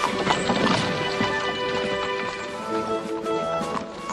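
Horse hooves clip-clopping as a horse-drawn wagon goes off, over orchestral background music.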